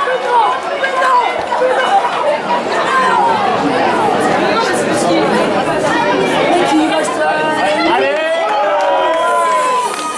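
Many voices shouting and talking over one another: rugby players calling out on the pitch, with spectators' chatter around them.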